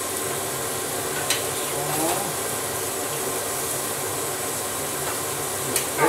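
Steak and squash sizzling steadily on a small indoor electric grill, with a fan running steadily underneath to clear the smoke. A single light click, tongs against the grill, comes about a second in.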